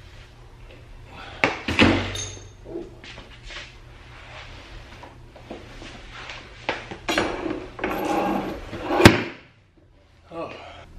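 Car seat being lifted out of the car: clunks and knocks as the seat and its rails bump against the body and door opening, then scuffing and rustling as it is maneuvered out. A sharp knock about nine seconds in is the loudest sound.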